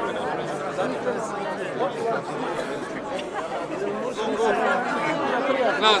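Crowd chatter: many people talking at once close around, with one nearer voice standing out toward the end.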